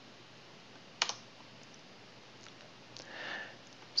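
A single sharp click about a second in, like a computer key or mouse button being pressed, followed by a few fainter ticks over quiet room tone. A soft breathy hiss comes near the end.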